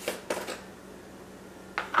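Light clicks and knocks of plastic spice jars and a metal tablespoon being handled while a plastic jar's cap is taken off and set on the counter: three close together at the start, one near the end.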